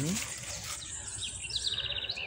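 A small songbird singing: a high, thin repeated phrase, then a quick run of short notes that ends in a falling slur.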